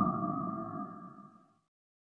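The opening theme music ends on a ringing, sonar-like tone that fades out over about a second and a half, then silence.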